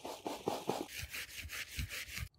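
Wet concrete being tipped from a rubber mortar bucket into a post hole and worked with a wooden batten: a run of rapid scraping, rubbing strokes, with a few dull thuds near the end as the batten tamps the mix to drive out voids.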